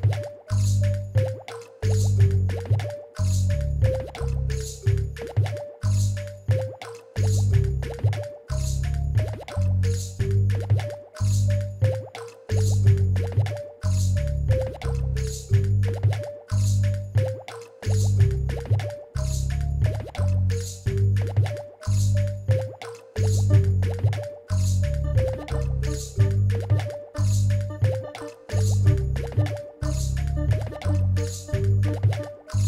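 Instrumental electro hip-hop loop played live on keyboard synthesizer and pads: deep bass pulses and a crisp, regular click beat under a short plinking melody that steps down in pitch and repeats every couple of seconds.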